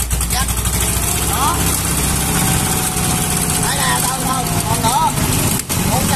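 Kubota ZK6 walking tractor's 5.5-horsepower Kubota ER550 engine running steadily with the throttle opened, driving the rotary tiller. Short bits of a man's voice come through faintly over it.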